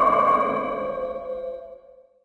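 A sustained ringing tone, several steady pitches sounding together, fading out over about two seconds and ending in silence: a film sound effect over black.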